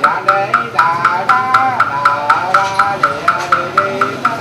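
A Buddhist wooden fish (mõ) struck at a steady beat of about four knocks a second, each knock ringing hollow, under funeral chanting whose melody glides up and down.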